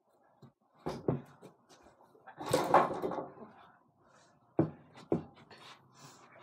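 A small basketball striking an over-the-door mini hoop: sharp thumps of the ball against the backboard and door, twice about a second in and twice near the end, with a longer, louder rattling clatter about two and a half seconds in.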